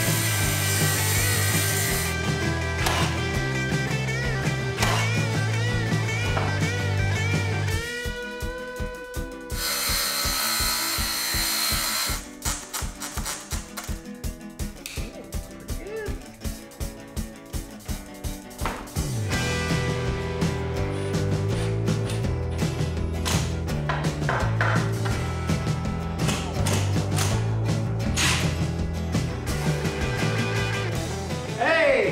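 Background rock music with guitar and a steady bass line. Midway it thins for several seconds to a sparse, evenly pulsing beat, then the full band comes back in.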